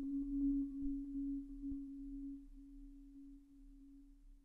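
Marimba holding a single middle-register note as a soft roll with yarn mallets. The mallet strokes are faintly heard at first and thin out as the note fades away.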